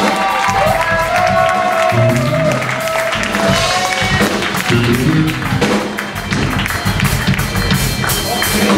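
Live blues band playing: electric guitar holding long, bending notes over drums and cymbals.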